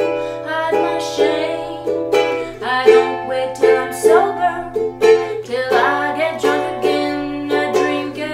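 Ukulele strummed, playing chords of a song in an unbroken run.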